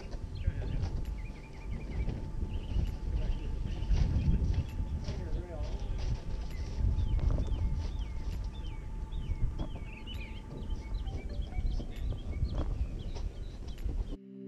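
Outdoor ambience: a low, uneven rumble under many short, quick chirping bird calls, with faint voices now and then.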